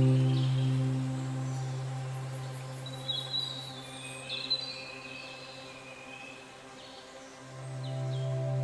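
Soft ambient background music: a held low chord slowly fades away, with a few short bird chirps about three to five seconds in, and a new chord swells in near the end.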